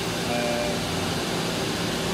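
Steady hum and hiss of running machinery in a machine shop, even and unbroken, with a short spoken "uh" near the start.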